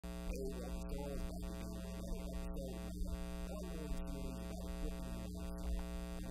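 Steady electrical mains hum, a low buzzing drone with a stack of overtones.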